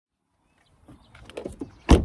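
Handling noise: a run of soft clicks and rustles, then a single loud thump near the end.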